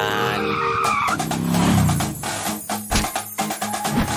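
Cartoon car sound effects over upbeat background music: an engine revving up and down with tyres screeching, as the car speeds off.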